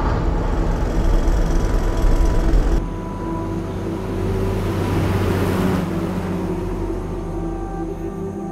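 Road vehicles running at night: a loud engine-and-tyre rumble that changes abruptly about three seconds in, then a large vehicle approaches and drives past, loudest a little past the middle and fading toward the end.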